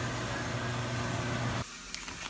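Microwave oven running with a steady low hum, which cuts off suddenly near the end.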